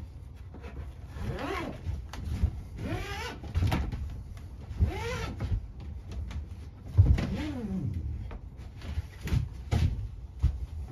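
Rip cords being pulled through the jacket of a loose tube fiber optic cable, squealing four times about two seconds apart, each squeal rising and then falling in pitch. Dull knocks come from the cable being handled on the bench.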